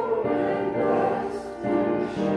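A hymn being sung, with slow notes held and moving step by step, as in choral or congregational singing.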